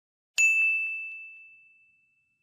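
A single bright bell ding, an editing sound effect, struck once about a third of a second in and ringing away over about a second and a half.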